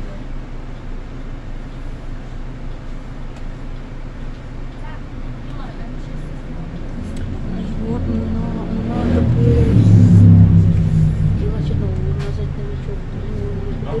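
Solaris Urbino 18 articulated bus standing in traffic with its engine idling, heard from inside as a steady low rumble. A deeper rumble builds to its loudest about ten seconds in, then eases off.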